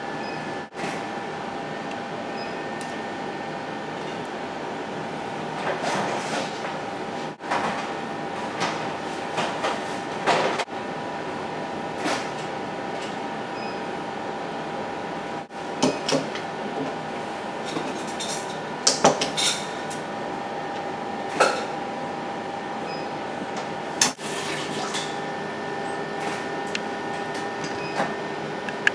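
A kitchen knife knocking and scraping on a plastic cutting board, with light taps of food and utensils on a plate, as squid is sliced for sashimi. Scattered sharp knocks over a steady hum.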